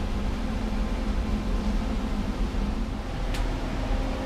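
A steady low mechanical hum over a hiss, with one faint click about three seconds in.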